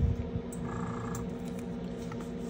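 A steady low hum, with a brief faint buzzing sound about a second in.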